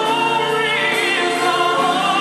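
Live concert music: a male vocalist singing a held, wavering note through the PA over a full band accompaniment.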